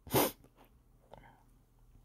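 A man's single short, sharp burst of breath, like a stifled sneeze.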